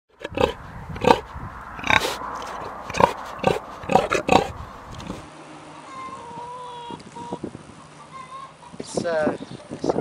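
Pigs grunting, a string of short abrupt grunts about every half second, followed by quieter, thinner drawn-out calls in the second half.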